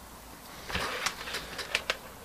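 Faint handling noise: a few light clicks and taps, starting about a third of the way in, from cells and multimeter probes being handled on a bench.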